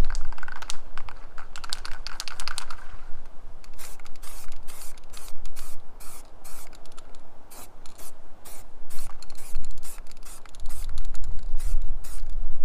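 Aerosol spray can of filler primer being used on a van panel: a quick rattling of clicks for the first few seconds as the can is shaken, then a run of short hissing spray bursts, about two a second, as another coat goes on.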